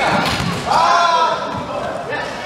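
Shouted voices echoing in a large sports hall, over thuds and knocks from a basketball and wheelchairs on a wooden court. The loudest shout comes a little under a second in.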